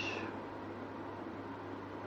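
Quiet room tone with a steady low electrical hum, in a pause between spoken phrases.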